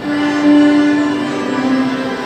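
A children's melodica (pianika) ensemble playing slow, held reedy chords; a new chord begins at the start and the notes shift lower about a second and a half in.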